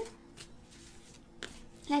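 Two brief soft clicks about a second apart, from a tarot card being handled as it is drawn and laid down, over quiet room tone.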